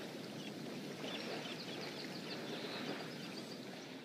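Steady, quiet background ambience: an even noise bed with a few faint, short high chirps.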